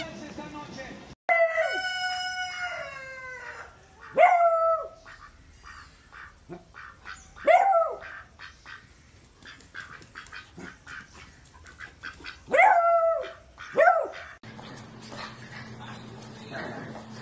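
A beagle barking and baying: one long drawn-out bay that falls in pitch, then four shorter barks spread over the next ten seconds or so.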